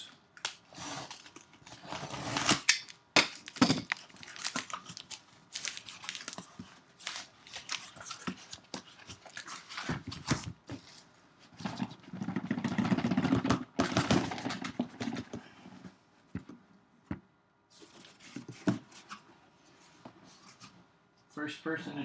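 A cardboard shipping case being opened and unpacked by hand: a string of knocks, taps and scrapes of cardboard and boxes being handled, with a longer stretch of cardboard scraping and rustling a little past halfway.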